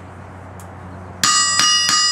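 Hand hammer striking the face of a 306-pound Peter Wright anvil three times in quick succession about a second in, the anvil ringing with a clear, bell-like tone that carries on after the strikes: a ring test of the newly hand-ground face.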